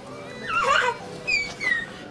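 Guinea pigs squeaking: one wavering squeal about half a second in, then two short, high, falling whistle-squeaks around a second and a half.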